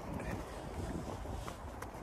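Wind buffeting the microphone in a steady low rumble, with a few faint footsteps on a wet path.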